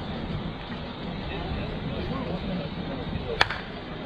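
A single sharp crack of a softball bat striking a ball, about three and a half seconds in, with faint voices in the background.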